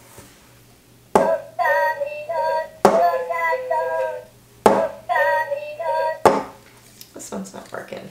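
Two McDonald's talking Minion toys, dancing Stuart figures with guitars, playing their recorded Minion singing through small toy speakers nearly in unison. There are two runs of singing, and sharp clicks fall at the start of each run and between them. Handling noise follows near the end.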